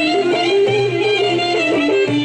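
Live Greek folk band playing a traditional dance tune: a busy, quickly moving melody line over low accompaniment, loud and continuous.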